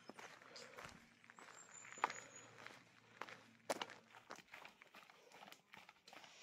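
Quiet, irregular footsteps crunching on a gravel road, with a short run of high bird chirps about a second and a half in.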